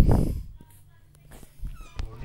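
A brief low, muffled thump on the microphone right at the start, dying away within about half a second, followed by faint voice.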